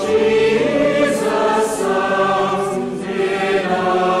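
Choir singing in long held notes, several voices together.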